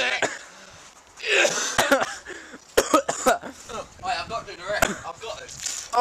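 Boys coughing and spluttering after a mouthful of ground cinnamon, mixed with laughter, with several short sharp coughs or spits about two to three seconds in.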